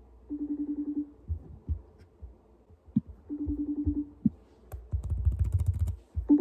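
FaceTime call ringing out on a laptop: a short trilling tone heard twice, about three seconds apart. Light knocks between the rings and a burst of handling noise near the end.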